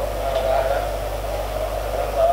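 Steady mains hum and hiss from the sound system, with a faint, distant man's voice speaking off-microphone.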